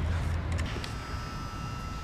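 Low, steady rumble of outdoor background noise, heavier in the first half-second, with a faint steady high tone from about a second in.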